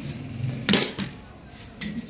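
Sharp knock of a cricket ball a little under a second in, echoing off bare concrete walls, followed by a lighter knock about a quarter-second later.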